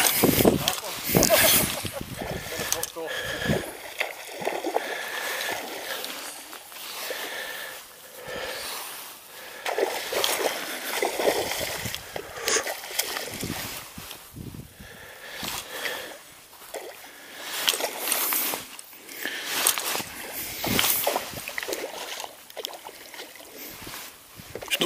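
A hooked trout being played on a fly rod, splashing and sloshing at the surface in irregular bursts, with the fly line handled and stripped in by hand.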